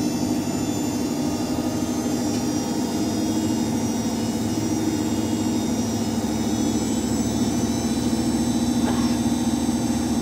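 Samsung WF80F5E0W2W front-loading washing machine running mid-cycle: a steady mechanical hum with a faint high whine above it, growing slightly louder in the second half.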